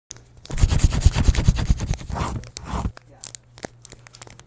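Sound effect of paper being scratched and crinkled, like a pencil sketching on crumpled paper: a dense run of rapid scratchy crackles lasting about two and a half seconds, then a few scattered ticks and scrapes.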